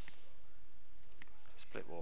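Computer mouse clicking: two single clicks about a second apart, over a steady background hiss.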